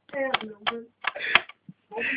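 Quiet speech: a person's voice in short, low-level phrases, with brief pauses between them.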